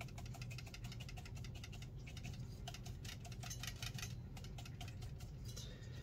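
Bristles of a wide flat watercolour brush scrubbing and dabbing pigment in a palette: a quick run of light, scratchy taps, several a second, over a low steady hum.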